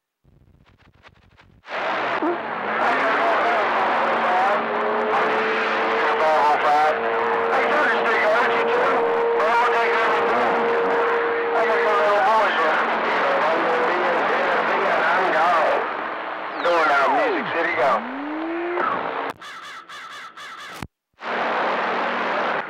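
CB radio receiver on channel 28 (27.285 MHz) picking up skip: after about a second and a half of quiet, it opens onto a loud, garbled jumble of several stations talking over each other, too mixed to make out. A steady whistle sits under the voices through the middle, and near the end a tone slides down and back up before the signal weakens and briefly cuts out.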